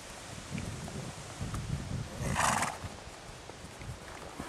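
Horse hooves thudding on a sand arena, with a short, loud snort from a horse about halfway through.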